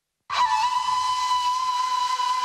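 Instrumental music: after a moment of silence, a flute comes in with one long held note over a soft steady drone.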